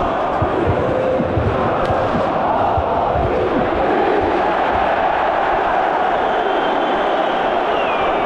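A large stand of football supporters chanting and shouting together, loud and steady, a mass of voices with no single voice standing out.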